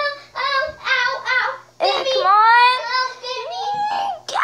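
A girl singing wordlessly in a high voice: a few short notes, then one long note that slides upward and holds from about two seconds in.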